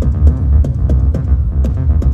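Electronic body music played live over a loud PA: a deep, throbbing bass line under a steady electronic beat of drum hits that fall in pitch, with short hissy hi-hat ticks on top.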